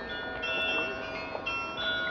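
Town hall carillon playing a Christmas melody: bells struck one after another about every half second, each tone ringing on and overlapping the next.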